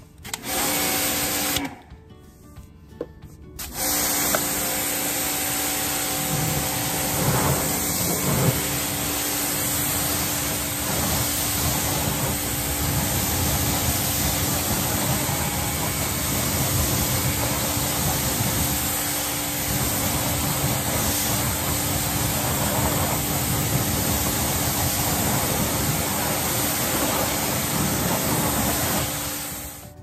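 Pressure washer running: a steady motor hum under the hiss of the water jet rinsing soap off a wheel and tyre. A short burst of spraying comes near the start, then the spray runs steadily from about four seconds in until just before the end.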